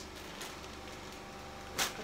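Clear plastic zip-lock bag handled and pressed shut, with one short, sharp crinkle of plastic near the end, over a steady low hum.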